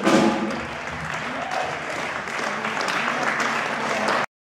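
Audience applauding at the end of a rockabilly song. The band's last note dies away at the start, and a few voices rise from the crowd.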